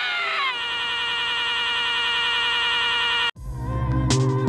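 A man's yell that flattens into one long, unwavering tone, held for nearly three seconds and then cut off abruptly. Electronic music starts just before the end.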